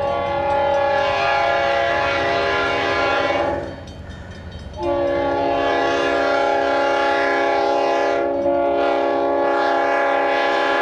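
Multi-note air horn of a Union Pacific EMD E9 diesel passenger locomotive blowing two long blasts, the first about three and a half seconds, a break of about a second, then a second long blast that carries on. The blasts are a grade-crossing warning, and the locomotive's engine rumble runs underneath.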